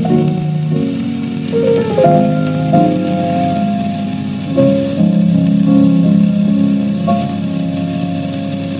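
Solo piano playing the introduction of a 1920s popular song, reproduced from a 78 rpm shellac record, with sustained chords changing every second or two.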